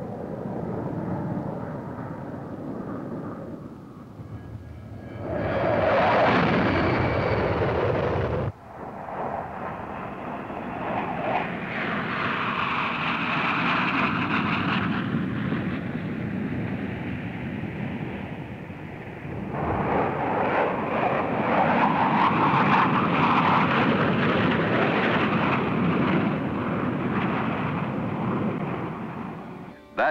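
Thunderbirds' F-100 Super Sabre jets flying over in formation: jet engine noise that swells and fades in several passes, cutting off abruptly about eight seconds in before building again.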